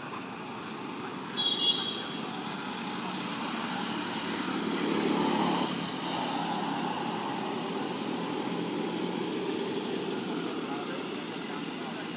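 Baby macaque giving one short, high-pitched squeal about a second and a half in, over steady background noise that swells lower and louder around five seconds.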